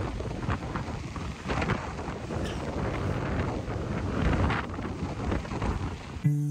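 Strong wind buffeting a phone's microphone, a rough rumble that swells and drops in gusts.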